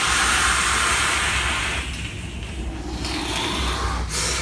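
A long draw on a box-mod e-cigarette fired at about 90 watts: a steady rushing hiss of air and vapour through the atomizer that fades about two seconds in, followed by softer breathy hiss.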